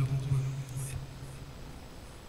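A pause in a man's speech through a microphone and PA: his voice trails off in the first second or so, leaving faint hiss and room noise.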